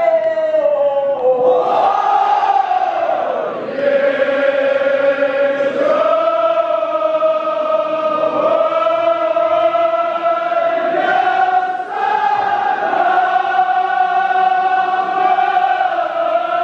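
A group of men chanting a Kashmiri marsiya (Shia elegy) together, drawing out long held notes in a slow, steady melody.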